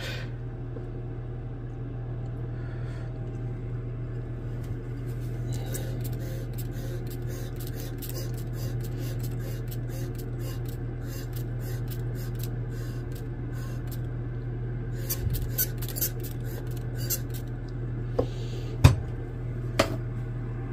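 Vacuum filtration through a Büchner funnel: a steady low pump hum while liquid is poured from a glass beaker and the beaker is rinsed down with squirts from a spray bottle, heard as bursts of short clicks.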